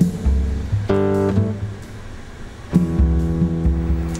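Guitar music: deep bass notes with chords ringing over them. A new low note and chord come in about every two seconds.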